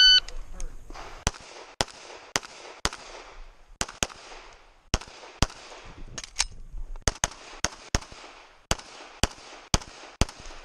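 An electronic shot timer beeps once at the start, and about a second later a Sig Sauer 1911 MAX pistol in .40 S&W begins firing. It fires about fifteen shots, mostly in quick pairs, with a pause for a reload about halfway through.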